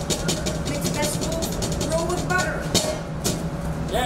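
A run of quick, irregular taps and knocks with voices and laughter, over a steady low hum.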